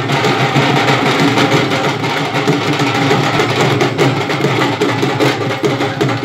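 Street procession band playing loud, dense drumbeats without a break.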